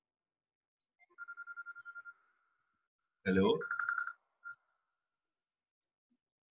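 An electronic phone ringtone: a steady trilling tone pulsing about ten times a second, sounding for about a second, then again briefly about two seconds later just after a short spoken word.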